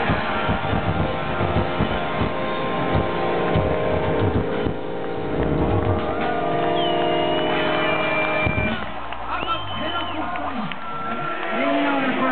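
Live Celtic punk rock band ending a song: drums and guitars pounding, then a held chord that rings on and stops about nine seconds in, followed by a large crowd shouting and cheering.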